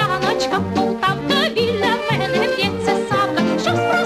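A woman singing a Ukrainian estrada song with a wide vibrato, over a light orchestral accompaniment whose bass moves on about two notes a second.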